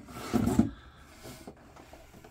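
A small cardboard blaster box sliding and scraping against the cardboard of a packed shipping carton as it is pulled out, one short scrape about half a second in, then faint rustling.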